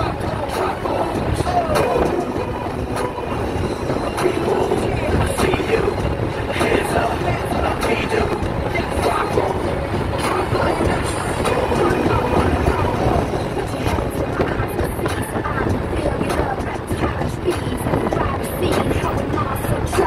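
Road and engine noise inside a moving car's cabin, a steady low rumble, with voices and music playing over it.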